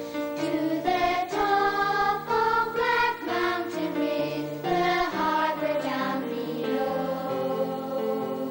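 Children's choir of primary-school boys and girls singing a song together, holding each note and moving to the next every half second or so.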